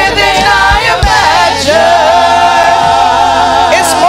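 A gospel praise team of several amplified voices singing together in a worship song. After a short moving phrase they hold one long note for about two seconds.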